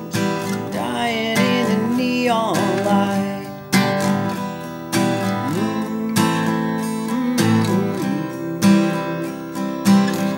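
Steel-string acoustic guitar strummed in a steady down-up pattern through chord changes, with a man singing over the first few seconds.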